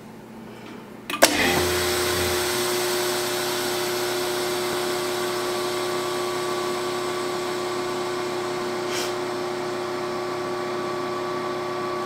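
VacMaster VP215 chamber vacuum sealer: the lid closes with a click about a second in, then the vacuum pump starts with a brief low thump and runs with a steady hum. The pump is drawing a vacuum on Mason jars in the chamber to seal their lids.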